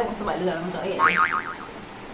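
A cartoon-style boing sound effect, a short high springy tone whose pitch wobbles quickly up and down a few times, about a second in, following a brief bit of voice.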